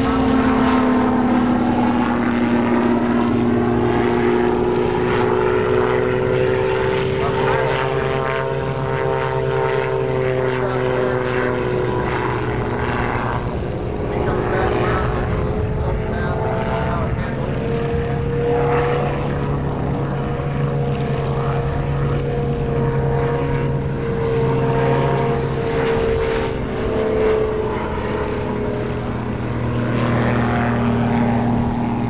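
Ultralight aircraft's engine and propeller droning steadily in flight, the pitch slowly drifting down and back up as the plane passes and manoeuvres.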